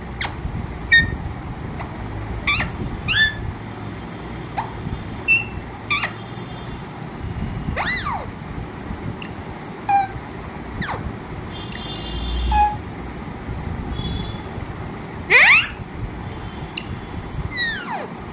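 Alexandrine parakeet giving short, sharp calls and squawks, about a dozen scattered through with quick rises and falls in pitch, the loudest near the end, over a steady low background rumble.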